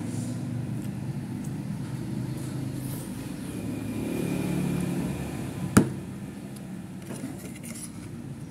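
A sharp clink of a metal spoon or fork against a plate just past the middle, with fainter cutlery ticks later, over a steady low rumble that swells about four to five seconds in.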